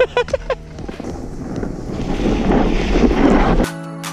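A brief laugh, then wind rushing over the microphone of a body-mounted action camera as a snowboard slides downhill over snow, the rush growing louder. Near the end it cuts off suddenly and electronic music starts.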